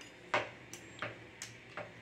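A round wheel dough cutter clicking against a stone countertop as it cuts a row of slits through a strip of dough. There are five short, sharp clicks, about three a second.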